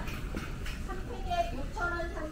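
Indistinct voices of shoppers talking, over a steady low hum of store ambience.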